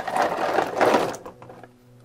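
A boxful of small metal watercolor paint tubes tipped out onto a table, clattering and rattling against each other and the box, dying away about a second and a half in.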